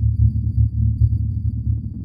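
Electronic music: a deep, low bass throb pulsing unevenly, with faint high ticks above it.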